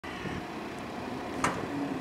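Steady outdoor background noise, an even hiss, with a short sharp click about one and a half seconds in.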